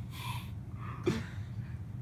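A person gasps, a sharp breath in, followed by a softer breath and a brief voiced sound about a second in, over a low steady hum.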